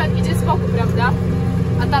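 Tractor engine running at a steady low drone, heard from inside the cab.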